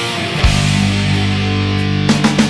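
Post-grunge rock band recording: a sustained guitar chord over bass, with a single drum hit about half a second in.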